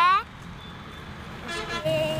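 Street traffic noise with a short vehicle horn toot about one and a half seconds in.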